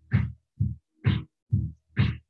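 Aerobics workout music's steady dance beat, a little over two beats a second: a low bass-drum thump on every beat and a sharper clap-like hit on every other one, with silence cut in between.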